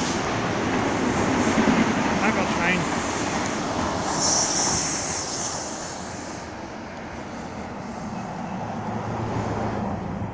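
Amtrak Talgo passenger train passing under an overpass: a steady rumble of wheels on the rails, with a brief high hiss about four seconds in. The sound fades after about six seconds as the train pulls away.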